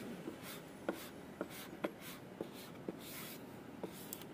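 Fingers rubbing and smoothing a vinyl sticker onto a motorcycle's painted body panel: short repeated swishes, roughly two a second, with faint light ticks between them.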